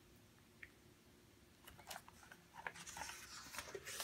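Faint paper rustling and light handling clicks of a picture-book page being turned, starting about a second and a half in after near silence.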